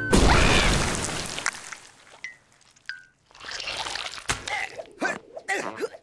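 A cartoon splash: water in a bowl-sized bath thrown up all at once, loud at first and fading away over about two seconds. Later come shorter cartoon effects and gliding voice-like noises.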